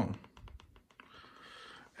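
TV remote control buttons clicking, pressed several times in quick succession during the first second, while the Philips TV fails to turn on. A faint hiss follows.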